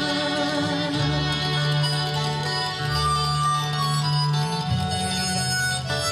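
Acoustic folk band playing an instrumental passage with no singing: fiddle, harmonica, mandolin, acoustic guitar, cello and upright bass. Long held low notes change every second or two beneath the melody.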